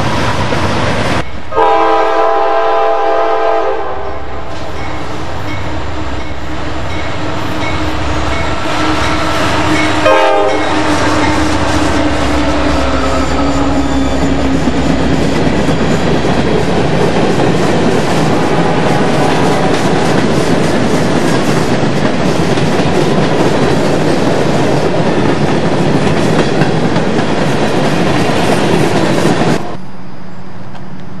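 Freight train passing with the steady rumble and clatter of cars on the rails. A locomotive's multi-chime air horn sounds for about two seconds just after the start, and a shorter horn sound comes about ten seconds in.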